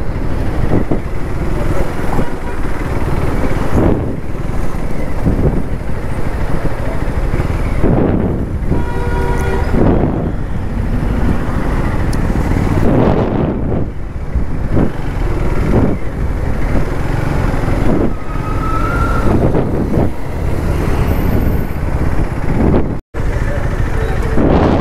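KTM Duke motorcycle's single-cylinder engine running while riding in traffic, with wind buffeting the microphone in gusts. A vehicle horn sounds briefly about nine seconds in.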